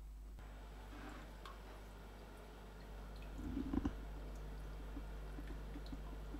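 Homemade mini humidifier running quietly: a small 12 V fan and an ultrasonic fogger in a plastic tub of water, with faint liquid sounds over a low steady hum. A few small knocks come about three and a half seconds in.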